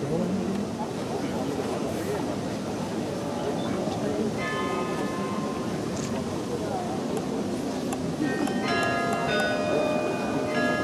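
Carillon bells played from the baton keyboard: a few single ringing notes start about four seconds in, then several bells sound together in denser chords near the end.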